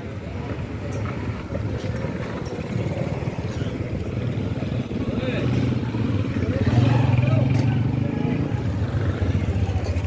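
A motorcycle engine running as it passes close by, growing louder to a peak about seven seconds in and then fading, over street traffic and background voices.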